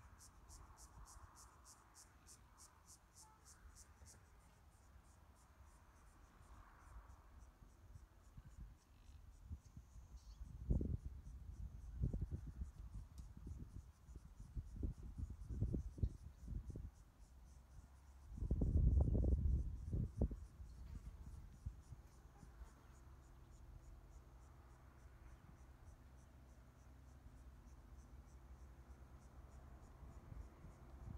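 Faint outdoor ambience: an insect's fast, even pulsing chirp for the first few seconds, then irregular low rumbling bumps in the middle, the loudest about two-thirds of the way in. A faint steady low hum of distant highway traffic runs beneath near the end.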